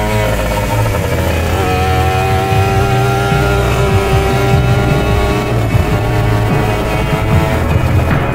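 A Simson Schwalbe scooter's small engine running steadily as it is ridden along, under background music.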